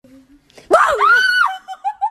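A woman screams in fright: one loud, high cry of about a second, which then breaks into short, quick bursts of laughter.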